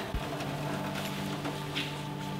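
Water pouring in a thin stream from a glass jar into a puddle in an aluminium foil pan, trickling and splashing lightly, over a steady low hum.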